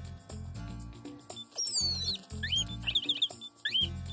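Background music with a steady bass line, over which a cartoon bird chirps: two falling whistles about a second and a half in, then a quick run of short chirps and one more near the end.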